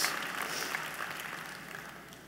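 Audience applauding in a large hall, the clapping dying away steadily.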